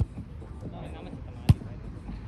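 Volleyball struck twice by hand: a light smack right at the start and a louder, deeper thud about a second and a half in, with players' voices in the background.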